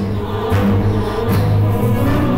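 Background score music with choir-like voices over sustained low notes.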